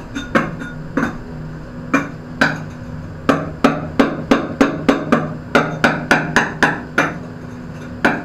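Sharp knocks of a floor tile being tapped down into its wet mortar bed: a few spaced strikes, then a quicker run of about three a second through the middle, stopping about a second before the end. A steady low hum runs underneath.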